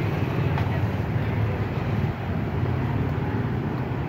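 Steady low rumble of city street traffic, mostly motorbikes riding by.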